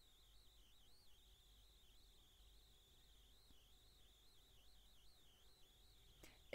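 Near silence: faint room tone with a thin, high-pitched whine that wavers slightly in pitch.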